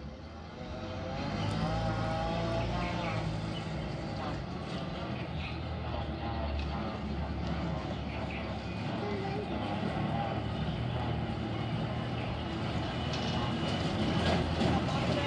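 Preet 987 self-propelled combine harvester's diesel engine running as the machine drives slowly along, growing louder over the first couple of seconds and then holding steady.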